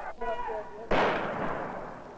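A single loud gunshot about a second in, dying away in a long echoing tail. Just before it comes a brief shouted voice.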